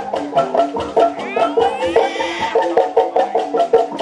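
Sundanese bamboo music ensemble playing a fast, busy pattern of short, pitched wooden-sounding knocks on tuned bamboo instruments, with drums underneath. A high sliding melody line comes in briefly around the middle.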